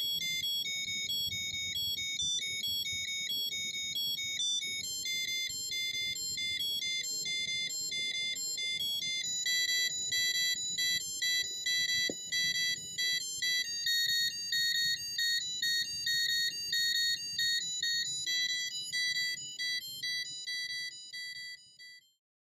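Arduino inside a jack-o'-lantern playing a spooky Halloween tune as high, thin electronic beeps, stepping from note to note. About halfway through the notes become shorter and choppier, and the tune fades out at the very end.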